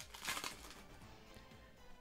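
Faint background music, with soft rustling of a foil booster pack and trading cards being handled in the first half second.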